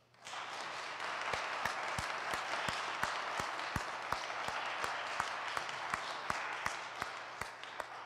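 Congregation applauding, with one pair of hands clapping loudly and steadily about three times a second above the rest. It starts abruptly and fades out near the end.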